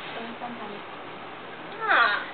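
A high, meow-like vocal call sliding steeply downward in pitch near the end, standing out loudly over faint room noise.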